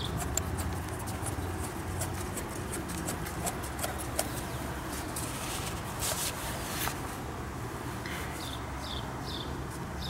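Small clicks and scrapes as a speedometer cable's threaded metal nut is screwed by hand onto the drive output of a SpeedBox speed converter, over a steady low hum.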